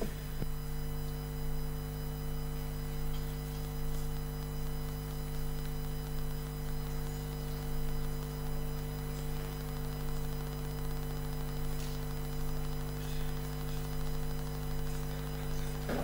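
Steady electrical mains hum, a low buzz made of a few fixed tones, running evenly with a couple of faint clicks.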